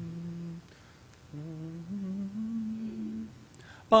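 A lone man's voice humming the starting pitches for an a cappella hymn. One low held note ends under a second in, then another begins at the same pitch and steps up to a higher note held for over a second.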